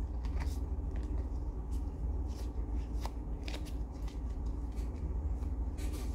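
Pokémon trading cards being flipped through by hand: light, irregular card flicks and slides as cards are moved through the stack, over a steady low hum.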